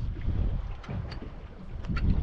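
Wind buffeting the microphone, a low uneven rumble that swells and eases, with a few faint sharp clicks.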